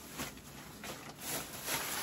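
Soft, irregular rustling and handling noise as items are picked up out of a shopping bag.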